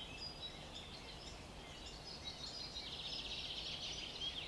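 Faint birdsong: thin high chirps scattered throughout, with a quick high trill over the last second or so.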